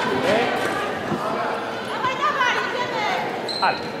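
Reverberant sports-hall ambience during a fencing bout: scattered voices from around the hall mixed with short squeaks and thuds of fencers' footwork on the piste. A brief high tone sounds near the end.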